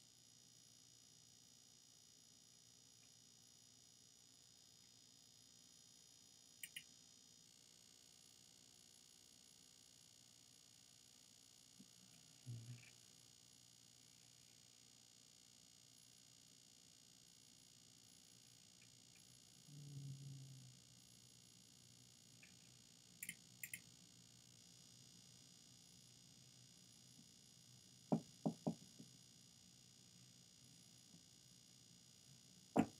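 Near silence: faint room tone with a few faint double clicks of a computer mouse, a brief low sound about two-thirds of the way in, and a quick run of three or four knocks near the end.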